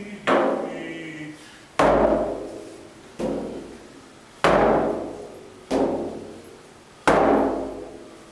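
Inuit frame drum (qilaut) struck on its wooden rim with a short beater in a slow, steady drum-dance beat. There are six strokes about 1.3 seconds apart, each with a deep ring that fades before the next.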